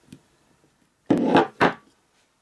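A clear acrylic stamp block knocked down and handled on the desk: a short clatter about a second in, then a second knock just after.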